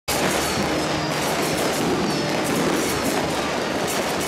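Dense, steady din of a street temple procession, with music playing through it.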